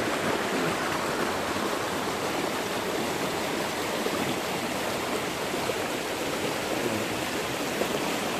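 Steady rushing of a fast-flowing creek over rocks, its strong current making an even, unbroken sound.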